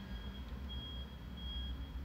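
A high-pitched electronic beep repeating at an even pace, about every two-thirds of a second, over a low steady hum.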